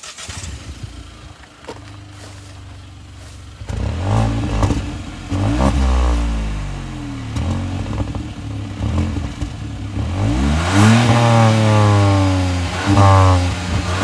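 Hyundai i20 N Line's 1.0-litre turbocharged three-cylinder petrol engine heard at its twin-tip exhaust: idling steadily for a few seconds, then revved again and again, the pitch climbing and falling with each blip of the throttle. The revs come quicker and higher in the last few seconds.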